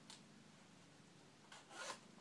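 Mostly quiet room, then a short rustle of jacket fabric being pulled open near the end.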